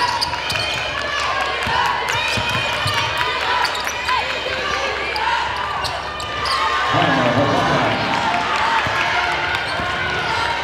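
Basketball game sounds on a hardwood court: sneakers squeaking, the ball bouncing, and players and spectators calling out, with a louder shout about seven seconds in.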